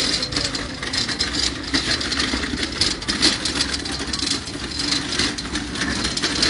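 A motor vehicle's engine running steadily at idle, a continuous low hum, with frequent short rustles and knocks on top.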